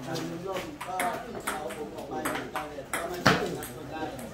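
Table tennis ball hits, a series of sharp clicks about half a second apart, the loudest a little over three seconds in, over people talking.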